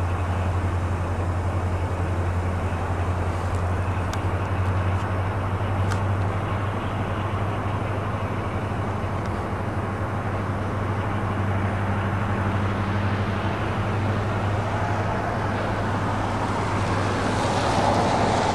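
Steady low mechanical hum under a constant rushing noise, outdoor industrial or roadway din, with a fainter higher hum that drops out about three quarters of the way through.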